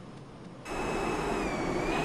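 Jet airliner engines in flight, cutting in suddenly about half a second in as a loud roar with a steady high turbine whine that dips slightly in pitch. Before it there is only a low cabin hum.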